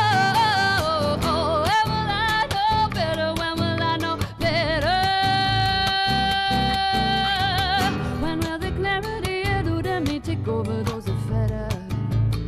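A woman singing over a strummed acoustic guitar, her voice wavering in pitch, with one long steady held note in the middle.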